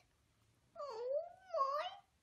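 A fluffy long-haired colourpoint kitten meowing: one drawn-out, wavering meow that starts about three-quarters of a second in and swells twice.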